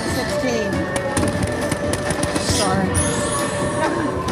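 Bally Fu Dao Le slot machine playing its big-win jingle with firecracker-popping effects: a run of sharp pops about a second in and a burst of hiss a little later.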